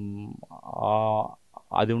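A man speaking Telugu, drawing out long held vowel sounds between words.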